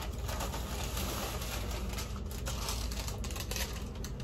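Crumpled packing paper and a plastic shopping bag being handled, crinkling and rustling in a dense run of small crackles.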